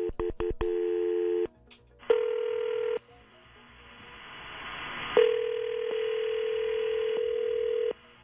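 Telephone line tones as an outgoing call is placed: a steady dial tone broken by several clicks, then ringing tones, a short one and then a longer one of nearly three seconds, with a rising line hiss between them.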